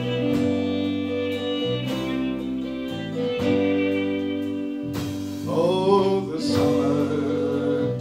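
Celtic folk band playing live: fiddle over electric and acoustic guitars, bass guitar and drum kit, the notes held and changing about once a second.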